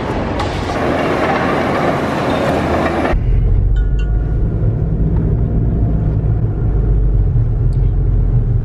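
Loud, dense noise of a busy waste-transfer hall. About three seconds in it cuts off suddenly, giving way to the steady low rumble of a car's engine and tyres heard from inside the moving car's cabin.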